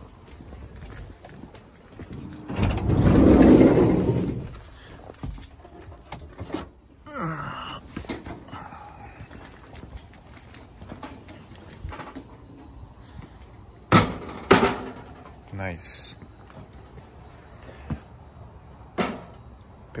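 Handling sounds around a van. A loud, drawn-out rumble of about two seconds comes a few seconds in. Later, two sharp thunks about half a second apart sound as a Coleman propane camp stove is set down on a plywood foldout table held by folding shelf brackets.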